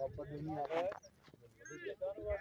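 Faint voices calling out across an open cricket ground, in two short stretches with a brief gap between them.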